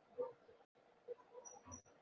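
Near silence: faint background room noise, with two brief high chirps about a second and a half in.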